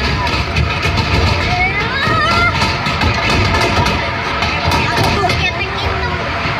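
Passengers' voices calling out and chattering over the steady low rumble and wind noise of a moving open-air park train.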